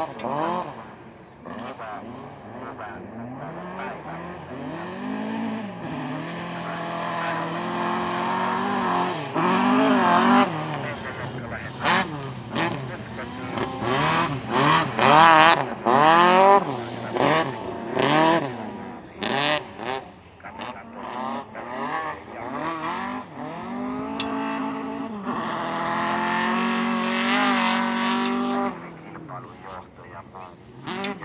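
Rally car engine revving hard on a snowy sprint stage, its pitch climbing and then dropping again and again through gear changes and lift-offs, loudest around the middle.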